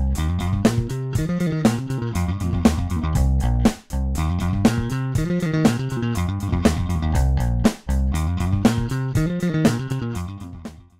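Fender Jazz Bass played fast with a pick: a repeating sixteenth-note-triplet riff in C minor, played with down and up strokes and hammer-ons and pull-offs. The riff runs through twice, with a brief break each time it comes round.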